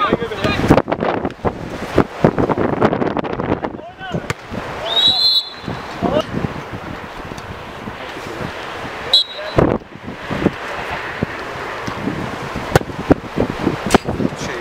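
Players' shouts and calls on a small-sided football pitch, with the knocks of the ball being kicked. Two short high whistle tones sound about five and nine seconds in.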